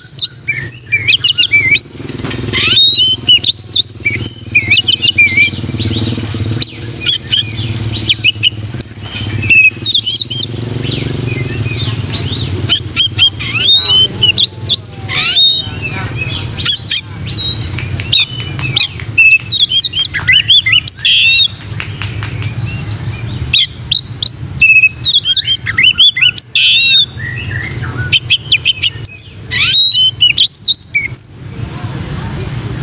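Oriental magpie-robin (kacer) singing in bursts of loud, rapid, varied whistled phrases with short pauses between them: the bird in full song (gacor), giving its own plain (plonk) song. A steady low hum runs underneath.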